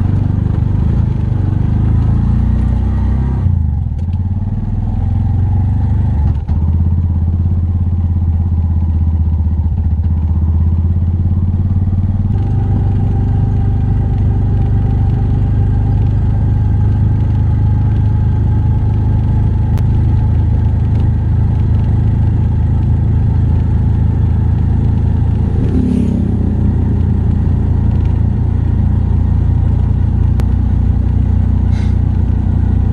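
Tuktuk's small engine running steadily under way, heard from the driver's seat along with road noise. The engine eases off briefly about four seconds in, and its note changes again about twelve seconds in.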